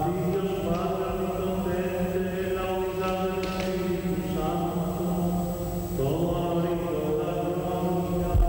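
Priest chanting the liturgy of the Mass in a single male voice, slow, with long held notes that step gently in pitch, over a steady low hum.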